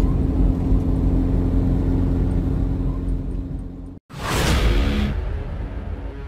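Steady engine and road rumble heard from inside a moving car on a highway. About four seconds in it cuts off abruptly, followed by a loud rushing whoosh that fades into music.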